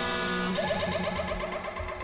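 An electric guitar chord held and ringing out between songs. About half a second in, a fast warbling effected tone starts over it, and the chord fades near the end.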